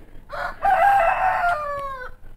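A rooster crowing once: one long call that holds its pitch and then falls away near the end.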